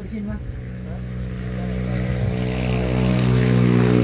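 An engine running at a steady pitch, growing gradually louder as it comes closer, after a brief bit of voice at the start.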